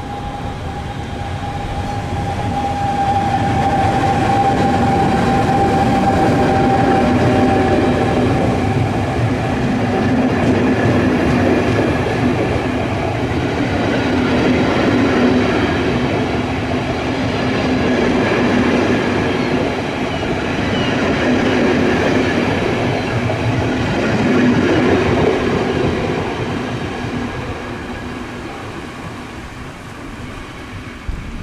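Double-deck electric passenger train passing close by, growing loud over the first few seconds, staying loud for most of the pass and fading as it runs away. A high whine, sinking slightly in pitch, sounds over the first several seconds.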